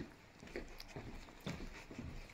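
A few faint, soft thuds with light rustling, irregularly spaced: footsteps and clothing of someone walking through a small dark room.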